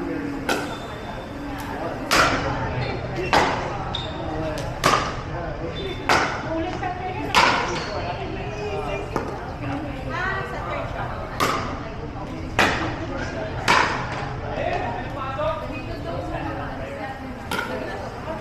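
Pickleball rally: paddles striking a plastic pickleball with sharp pops about once a second, echoing in a large indoor hall. Six hits in a row, a pause of a few seconds, then three more, and one more near the end.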